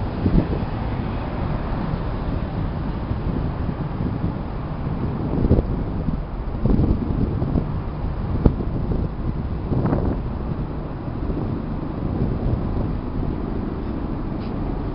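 Steady low rumble of wind buffeting the microphone, with a few brief knocks scattered through it.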